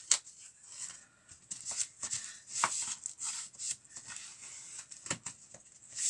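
Crinkling and rustling of a vinyl album's plastic shrink-wrap and cardboard sleeve being handled and pulled apart by hand, in short irregular strokes with a few sharp clicks.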